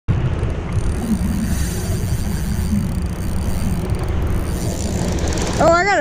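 Fishing reel clicking and whirring as the line is worked, over a steady low rumble on the body-worn camera's microphone. A man's voice calls out near the end.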